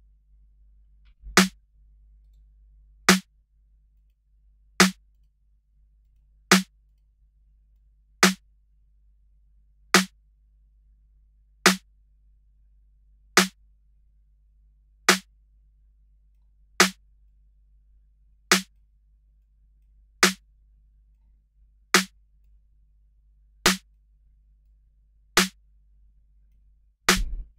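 Electronic snare drum sample from the MDrummer drum plugin, played solo in a loop: single sharp hits about every 1.7 seconds, fifteen in all, while an EQ low cut is shaped on it.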